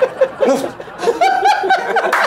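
A group of men laughing and chuckling together, with snatches of speech among the laughs.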